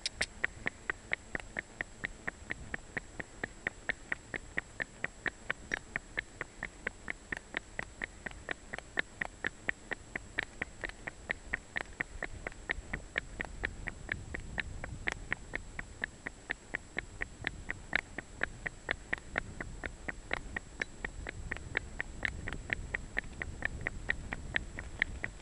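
Miniature horse's hooves clopping on a hard road at a trot, an even beat of about four sharp clops a second. A low rumble swells twice, around the middle and near the end.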